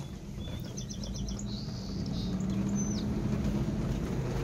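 Car engine and road noise as a steady low hum inside the cabin while driving slowly. A bird chirps over it in the first three seconds: a quick trill of about six high pips, a short high note, then a falling whistle.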